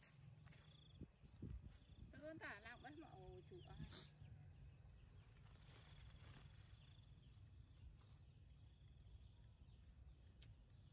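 Near silence: quiet outdoor background with a steady low rumble, and a brief faint wavering call from about two seconds in, lasting a second and a half.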